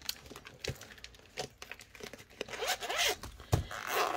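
Light clicks and scrapes of a vinyl zippered binder pouch being handled, a soft thud about three and a half seconds in as it is set on the table, then its zipper starting to be pulled open.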